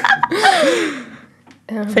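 A woman's laughter trailing off in a breathy gasp whose pitch glides downward, dying away about a second in. Speech starts again at the very end.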